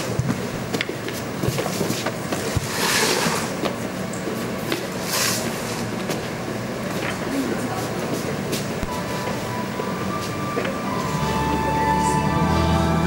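Stage noise in a darkened hall: a steady hiss with scattered light knocks and shuffles as performers move and set props down on the stage. Soft music begins to come in near the end.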